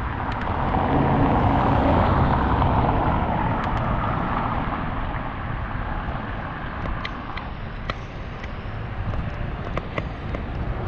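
Wind rushing over the microphone and road rumble from a moving bicycle, louder over the first few seconds and then easing, with a few faint clicks and rattles.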